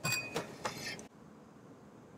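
Several light metallic clinks of tools on the RV's underside while the oil drain nut is being loosened for an oil change. One clink rings briefly, and they stop about a second in.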